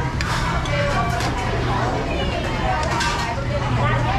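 People talking over a steady low hum of street traffic, with a few short clinks of spoons against plates.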